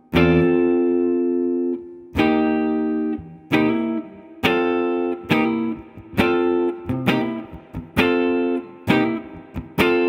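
Les Paul-style electric guitar playing ninth chords in a blues rhythm groove in C. It opens with two long ringing chords, then settles into shorter, sharply struck chords about once a second.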